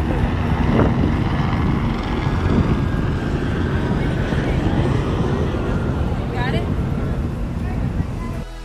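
Wind buffeting the microphone in a loud, steady rumble, with faint voices underneath.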